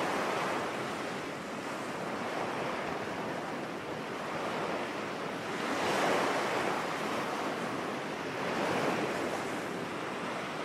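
Sea waves washing over a shallow, flat sandy beach, a steady rush that swells louder three times, near the start, about six seconds in and near the end, with some wind.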